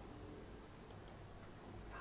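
Quiet room tone with a steady low hum and a couple of faint ticks near the middle.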